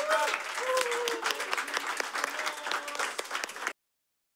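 A small group clapping by hand, with voices over it, cutting off suddenly near the end.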